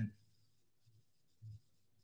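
The last syllable of a man's spoken question, cut off just as it begins, then a pause of near silence with one faint, short, low sound about one and a half seconds in.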